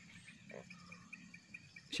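Insects chirping faintly in a quick, steady pulse, with a brief soft sound about half a second in.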